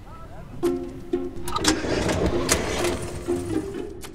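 An old car's engine is cranked and sputters for about a second and a half without catching: the car has broken down and won't restart. Plucked-string music plays over it.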